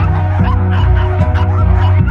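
Background music with held low notes, with caged terriers barking and yipping in a kennel.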